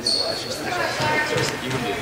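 A short, high squeak of a court shoe on the floor at the very start, then spectators talking quietly among themselves.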